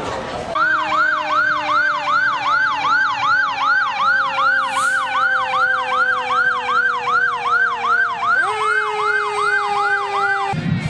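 Fire engine siren sounding a fast yelp, about three sweeps a second, starting about half a second in. Under it a lower steady tone slowly falls and then steps back up near the end.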